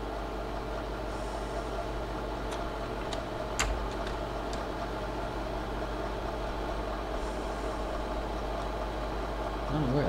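Steady hum of a slide projector's cooling fan. A sharp click about three and a half seconds in, with a few fainter ticks around it, as the projector changes slides.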